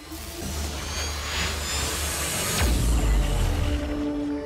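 Intro-sting music for an animated logo reveal: a rising swell of cinematic sound effects building to a deep bass hit about two and a half seconds in.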